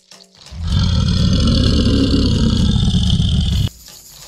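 A loud, roughly three-second roar sound effect, with a pitch that swells and falls back, cutting off abruptly near the end.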